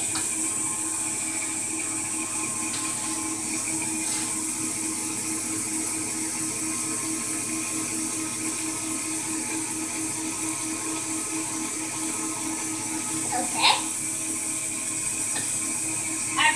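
Steady hiss with a low hum underneath, unchanged throughout, and one brief faint sound near the end.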